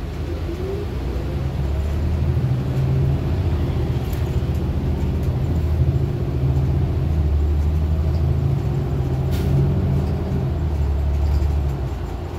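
City bus engine and drivetrain heard from inside the passenger cabin: a low rumble that grows louder about a second in as the bus pulls away from a stop and accelerates. A short rising whine comes near the start, and a sharp click or rattle about nine seconds in.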